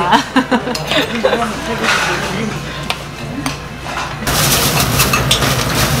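Spoons and chopsticks clicking against stone soup pots and dishes, with quiet chatter around a restaurant table. About four seconds in, a louder, busier noise takes over.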